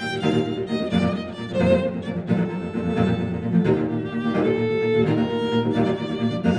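Violin and cello playing together, with a low cello line beneath a higher violin part and the notes changing several times a second.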